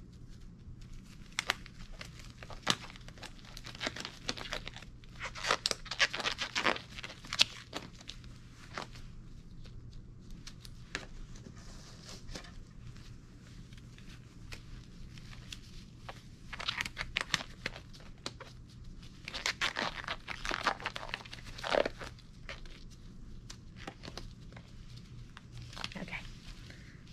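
Blue disposable exam gloves being pulled on, the glove material stretching, rubbing and snapping with crackly clicks, in two bouts, one about a few seconds in and one after the middle.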